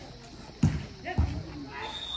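Two dull low thumps about half a second apart, over faint voices.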